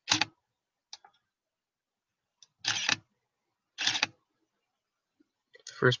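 Digital SLR camera shutter firing to take a stop-motion frame: short mechanical clatters at the start and about 2.7 and 3.9 seconds in, with quiet between.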